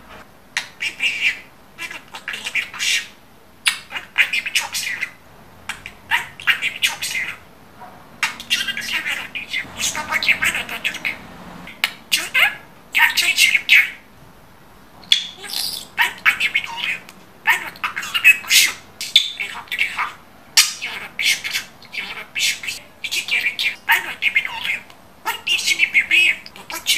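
Talking budgerigar chattering and warbling in repeated high-pitched bursts with short pauses between them, its warble mixed with mimicked speech.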